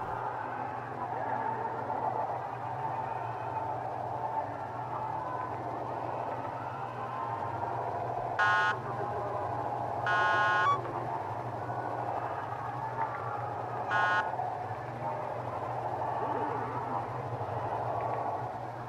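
Street traffic: a steady rumble of vehicles, with three car horn honks. A short one comes about halfway through, a longer one about two seconds later, and another short one a few seconds after that.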